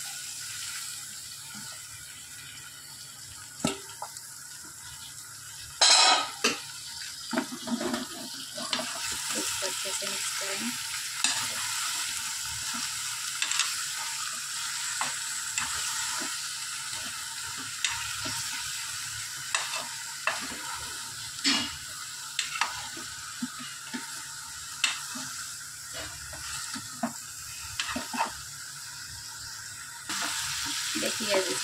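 A metal spoon stirring sliced green chillies in an aluminium pressure cooker, knocking and scraping against the pot over a steady sizzle of frying. There is one loud clang about six seconds in.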